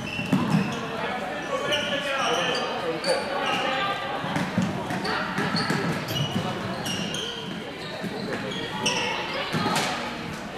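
Floorball game sounds in an indoor hall: many short, high squeaks of shoes on the court floor, sharp clicks of sticks and ball, and players calling out, echoing in the large hall.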